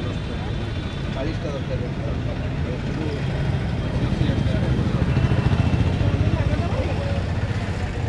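Background voices talking over a steady low engine hum, which grows louder from about four to seven seconds in.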